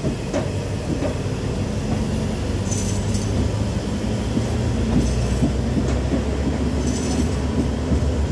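Class S11 express train running, heard from an open carriage window: a steady low rumble of wheels on track with some clatter. Brief high-pitched wheel squeals come twice, about three seconds in and again near the end.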